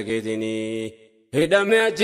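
A man singing an Afaan Oromo nashiida, a chanted Islamic devotional song. He holds one steady note, breaks off for a short pause about a second in, then starts the next sung phrase.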